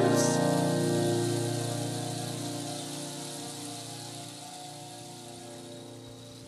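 Rainstick tilted so its pellets trickle down inside, making a rain-like hiss that fades slowly away, over the song's last chord ringing out.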